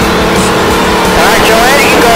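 Race car engine running at speed, heard loud and steady from inside the cockpit, with road and wind noise.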